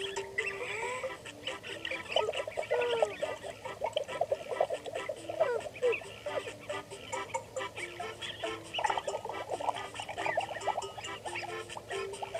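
Cartoonish honking and quacking puppet noises full of quick rising and falling pitch glides, over a simple tune of held notes that step between a few pitches.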